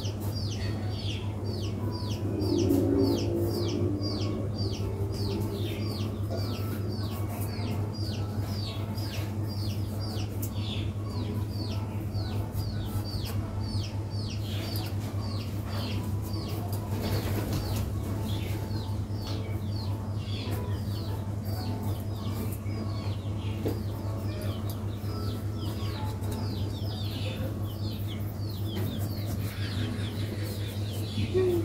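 A chick peeping over and over, short high falling notes at about two a second, with a brief lower clucking about three seconds in. A steady low hum runs underneath.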